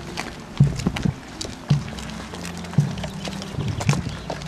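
Slow procession march from a band, with a bass-drum beat about once a second under held low notes, and the scattered footsteps of the walking crowd.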